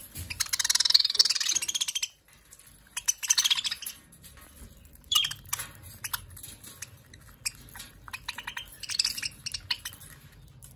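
Budgerigars chattering and chirping, dense and loud for the first two seconds, then in shorter bursts. Scattered small clicks of beaks on seed run between the calls.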